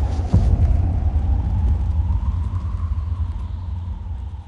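Deep, sustained rumble from film sound design, with one sharp thud just after the start; it thins out and begins to fade near the end.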